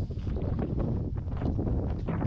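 Wind buffeting a small action-camera microphone: a steady low rumble broken by short, irregular crackles.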